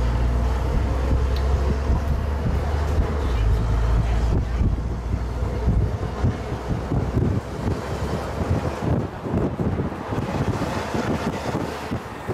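Wind buffeting the microphone on the open top deck of a moving bus, over the bus's low rumble. The rumble fades about halfway through, leaving choppy, gusting wind noise.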